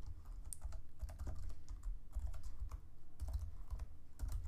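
Typing on a computer keyboard: a quick, uneven run of key clicks, each with a low thud beneath it.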